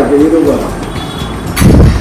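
Conversation at a table with a man's low, hooting laughter, and a louder burst of voice or laughter near the end.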